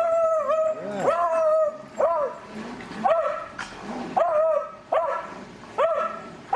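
A dog whining and yelping over and over, about one cry a second. Each cry rises sharply and then holds a high, steady pitch for a moment.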